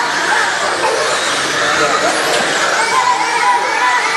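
Several radio-controlled dirt oval race cars running together, their motors whining, the pitch rising and falling as they speed up and slow around the oval, over crowd chatter.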